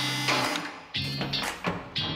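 Upbeat background music: repeated bass notes about every second under sharp percussive hits.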